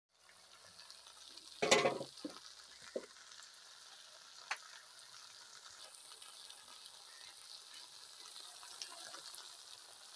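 Sliced okra frying in a steel kadhai, a steady sizzling hiss. About a second and a half in comes one louder clatter, followed by a few lighter clicks.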